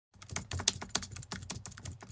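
Computer keyboard typing sound effect: a quick, irregular run of key clicks.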